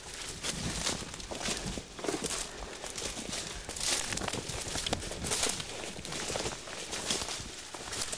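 Footsteps through woodland undergrowth: uneven crunching and rustling of leaves and brush underfoot as a person walks.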